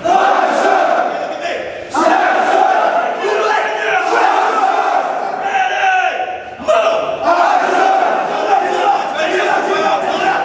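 Many male voices shouting at once: a platoon of Marine recruits yelling together in a large hard-walled squad bay, with drill instructors shouting among them. The loud chorus breaks off briefly about two seconds in and again about six and a half seconds in.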